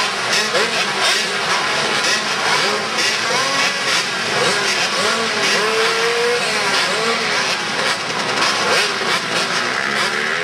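Several small pit bike engines running and revving in an indoor arena, with many overlapping rises and falls in pitch.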